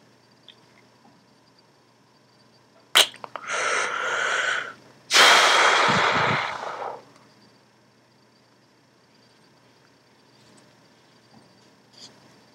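A person's loud breath noise through the nose and mouth, like a sneeze: a sharp click, a drawn-in breath of about a second and a half, then a longer, louder rush of air outward.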